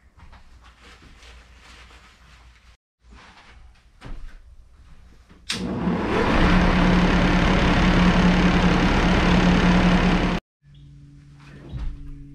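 Shopsmith lathe running at speed with a bowl blank spinning: a loud steady hum under a rushing noise. It starts with a click about five and a half seconds in and cuts off suddenly about five seconds later, followed by a quieter hum. Before it, only faint rustling.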